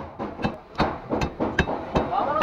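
Knife chopping through fish onto a wooden cutting board: a run of about five sharp knocks, two or three a second.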